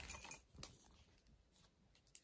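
Faint handling noise: a few soft clicks and rustles as a plastic Blu-ray case is moved and turned over by hand, fading to near silence about half a second in.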